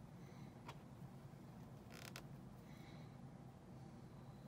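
Near silence over a steady low room hum, with faint handling sounds from hand-sewing a felt piece with needle and thread: a small click just under a second in, a brief rustle about two seconds in, and a few faint short squeaks.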